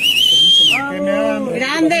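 A loud, shrill whistle held for just under a second, rising slightly at its start and dropping off at its end, followed by a raised voice.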